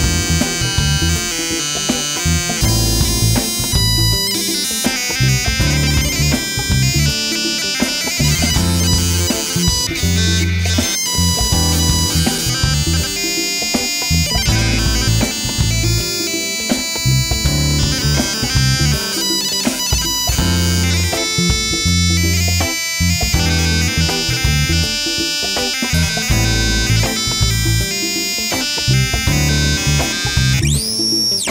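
Homemade Arduino-controlled electronic instrument: a buzzer run through guitar pedals, its pitch shifted by hand movements over a distance sensor. It plays shifting, buzzy, reedy notes over a pulsing low rhythm.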